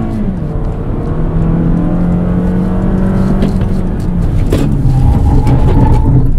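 Toyota Camry 2.5Q's 2.5-litre Dynamic Force four-cylinder engine pulling under acceleration, heard from inside the cabin. Its pitch drops just after the start, as the 8-speed automatic shifts up, then holds fairly steady.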